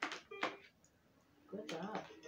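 Toy piano keys pressed by a whippet, giving two short notes about half a second apart.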